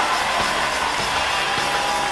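Live rock band playing an instrumental passage: the drums keep a steady beat under a held high note that slowly slides down in pitch.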